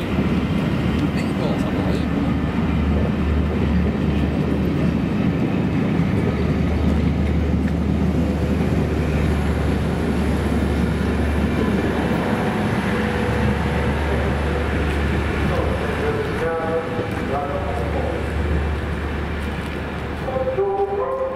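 A rake of passenger coaches rolling past at a station, a steady rumble of wheels on rail with a low hum beneath that lasts throughout.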